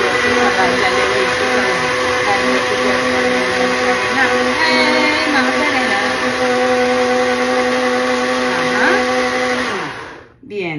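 Smeg personal blender running at a steady pitch, blending papaya chunks and water into juice. The motor cuts off suddenly near the end.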